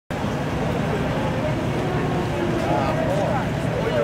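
Steady low rumble of vehicle engines in the street, with people's voices talking in the background, strongest from about halfway through.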